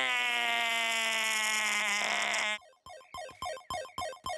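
Cartoon soundtrack: a loud held musical chord that cuts off about two and a half seconds in. Then comes a quick run of short pitched bonks, about four a second, as fruit tumbles down a hill.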